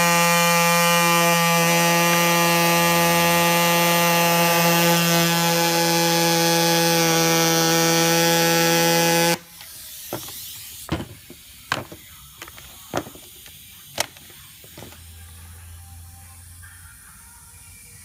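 Handheld rotary tool running at a steady speed while cutting into a plastic dash bezel: a steady motor whine with a cutting hiss. It stops abruptly about nine seconds in, and several sharp clicks and knocks of the plastic being handled follow.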